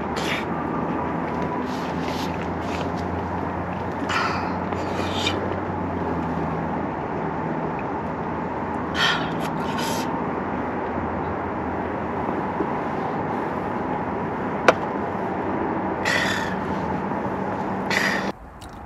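Steady rushing background noise, with a few short slurps and sips of soup taken from a spoon and a cup, and one sharp click a little before the end.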